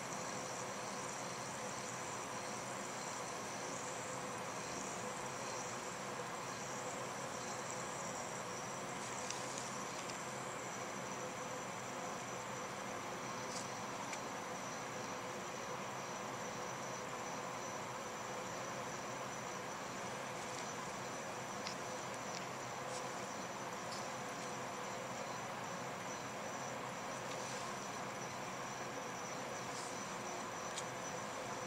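Steady background room noise: an even hiss with a constant high-pitched whine and a low hum, with a few faint ticks about a third of the way in and again after the middle.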